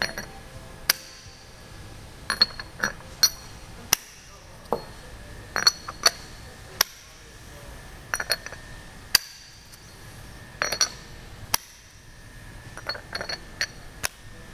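Steel quick-change jaws being set onto Schunk KSX 5-axis vises and locked in place one after another: a run of sharp metallic clicks and clinks in irregular clusters, some ringing briefly.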